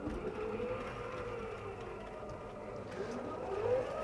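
Vertically sliding chalkboard panels running in their tracks, a steady rumbling whir, with a short rising squeal near the end.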